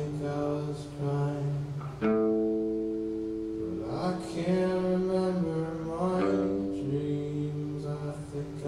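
Steel-string acoustic guitar played live: slow strummed chords left to ring, changing to a new chord about every two seconds.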